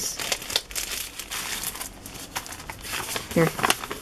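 Kraft paper envelopes and a padded mailer being handled, crinkling and rustling in quick, irregular crackles.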